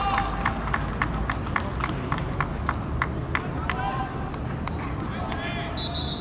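Shouting voices on and around the pitch over a steady low rumble, with a rapid, even run of sharp claps or taps, about three a second, that stops about four seconds in.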